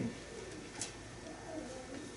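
Pages of a Bible being leafed through in a quiet room: soft paper rustle with a small tick a little under a second in. A faint, brief wavering pitched sound follows about a second and a half in.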